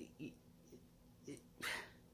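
Quiet pause in a woman's talk: a few faint short mouth sounds, then one breath drawn in near the end.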